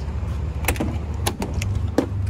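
A steady low mechanical hum, with about half a dozen sharp clicks and knocks over it.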